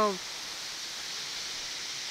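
Steady rushing of a waterfall, an even hiss with no breaks.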